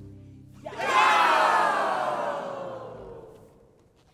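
Ensemble players shout together, a sudden loud massed cry about a second in that slides down in pitch and fades away over about three seconds.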